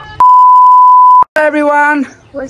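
An edited-in beep tone: one steady, loud, high-pitched tone lasting about a second that cuts off suddenly, followed by a person's voice.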